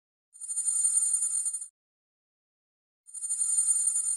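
A telephone ringing twice: two high, rapidly trilling rings, each lasting well over a second, with a silent pause of about the same length between them.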